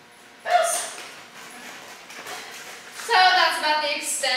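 A woman's voice calling short words to a dog: one brief call about half a second in, then a longer stretch of talk starting about three seconds in.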